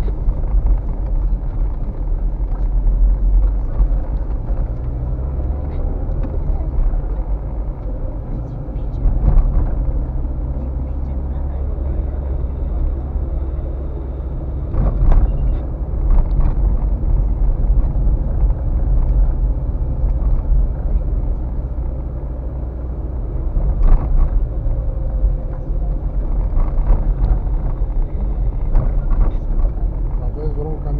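Car driving slowly over a rough, potholed dirt road, heard from inside the cabin: a steady low rumble of tyres and engine, with a few sharper knocks and jolts from the suspension as the wheels hit ruts and holes.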